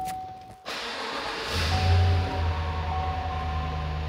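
The 5.3-litre V8 of a 2018 GMC Yukon cranking and starting. The starter noise comes in sharply under a second in, and the engine catches about a second later and settles into a steady fast idle. A steady dashboard chime tone sounds over it.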